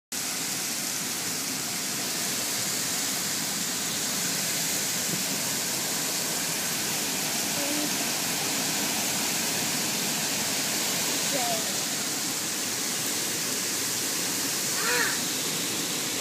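Heavy downpour: rain pouring down in a dense, steady hiss. A brief faint voice rises over it near the end.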